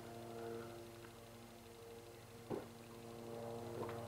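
A man sipping porter from a pint glass, with a faint swallow about two and a half seconds in and another near the end, over a steady low electrical hum.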